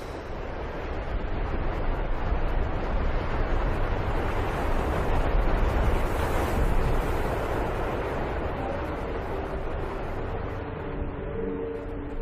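A steady noisy roar with most of its weight low down. It builds to a peak around the middle, then slowly eases off, and a few faint held tones come in during the last few seconds.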